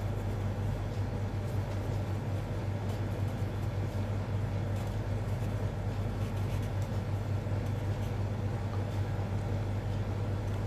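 Steady low hum and background rumble, with faint strokes of a felt-tip marker writing on paper.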